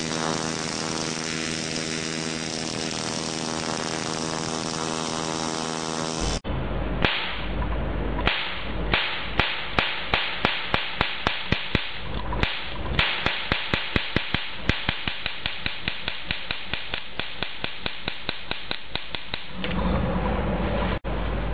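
Plasma spark plug firing from a capacitive discharge ignition at 50 Hz: a steady buzz. About six seconds in it changes to a water spark plug fed with 175 V DC, giving sharp electric cracks, irregular at first and then about four a second.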